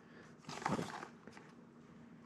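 Quiet room with a brief, soft rustle of a cardboard retail box being handled and turned over, about half a second in.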